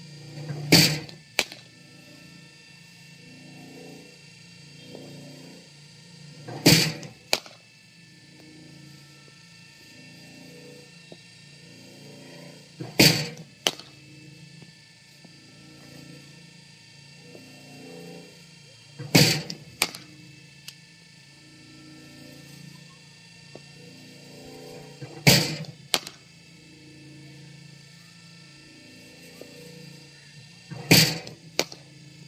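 Cricket bowling machine firing a ball about every six seconds, five times in all: each time a loud sharp thunk, then about half a second later a lighter crack of the bat meeting the ball in a back-foot punch. Background music with a steady beat runs underneath.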